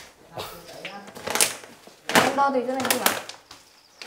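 Quiet, somewhat distant conversation: people's voices speaking in short phrases, with a brief click at the very start.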